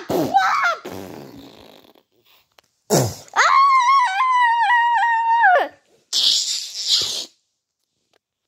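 A person's voice making character noises with no words: short high squeals at the start, a long high-pitched wavering wail of about two seconds in the middle, then a breathy hissing burst near the end.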